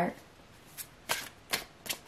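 Tarot cards being handled, giving four short, crisp clicks at irregular intervals in a quiet stretch.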